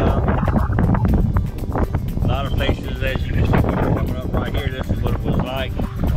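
Wind buffeting the microphone and the low rumble of an open-top vehicle driving slowly on a gravel road. Over it plays music with a wavering singing voice, which is clearest from about two seconds in.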